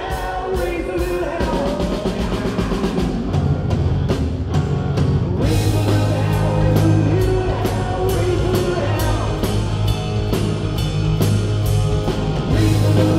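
Live rock band playing with a singer: the drum kit keeps a steady beat over keyboards and guitars. A heavy bass line comes in about three seconds in and gets fuller a couple of seconds later.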